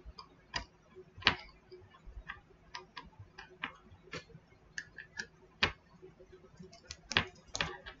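Irregular light clicks and knocks of small hard objects being handled on a tabletop, with a metal wrist bracelet knocking against the table. The strongest knocks come about a second in, near six seconds, and twice near the end.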